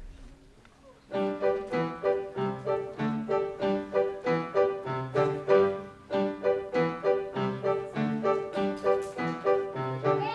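Upbeat piano introduction starting about a second in, low bass notes alternating with chords in a steady bouncing rhythm.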